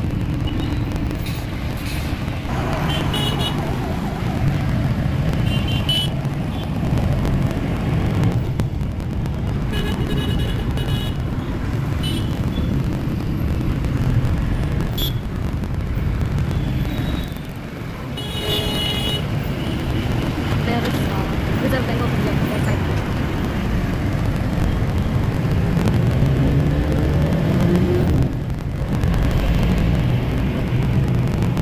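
Steady engine and road rumble inside a moving Tempo Traveller minibus in city traffic. Vehicle horns sound several times: a few seconds in, around the middle, and longest near the two-thirds mark.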